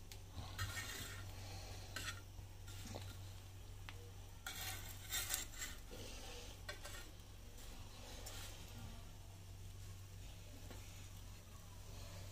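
Metal spatula scraping and clinking on a flat iron tawa as slices of bread are shifted and turned, in short irregular bursts that are loudest around the middle, over a low steady hum.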